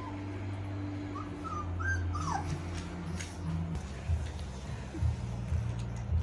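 Young Yorkshire Terrier puppies whimpering and yipping: a few short, high squeaks that rise and fall, about a second or two in, over a steady low hum.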